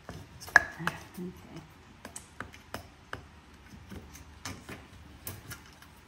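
Thin perforated metal sheet clicking and ticking as it is pressed and flexed into the groove of a frame, a dozen or so sharp clicks, the loudest about half a second in. The sheet bends rather than sliding easily into the groove.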